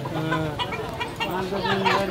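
Chickens clucking, with people's voices around them.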